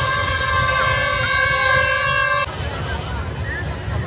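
A steady horn-like tone with several overtones, held without change and cut off sharply about two and a half seconds in, over a low rumble; after it, crowd voices and fairground noise.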